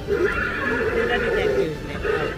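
A horse whinnying: one long wavering call of about a second and a half, loud against the background.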